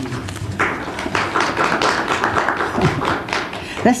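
Audience applause of many hands clapping. It starts about half a second in and lasts about three seconds.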